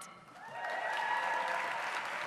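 Audience applauding in a large hall, building up about half a second in and holding steady.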